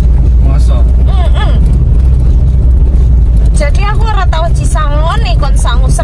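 Steady low rumble of a car on the move, heard from inside the cabin, with voices talking over it twice.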